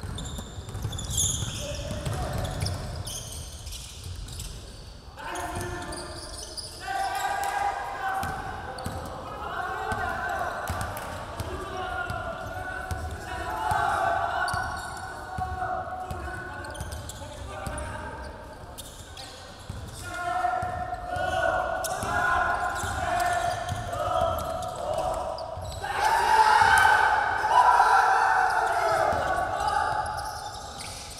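A basketball bouncing on a hardwood gym floor as it is dribbled during play, with players' voices calling out across the court.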